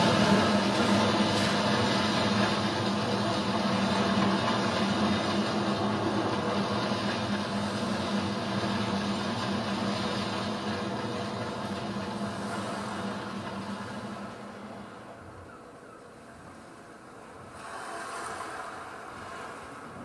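Stage sound effect of a steady mechanical engine drone, like massed vehicle traffic, that fades slowly away over about fifteen seconds. A short, softer swell of noise follows near the end.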